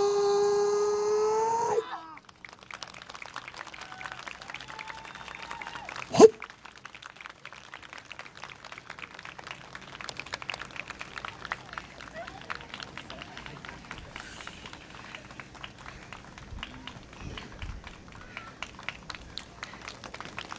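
A long held vocal note ends the yosakoi dance music about two seconds in. Scattered hand clapping from the audience follows and runs on, with one brief loud shout about six seconds in.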